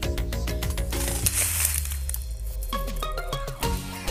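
Upbeat background music with a steady beat and sustained instrument notes, with a short hissy swell about a second in.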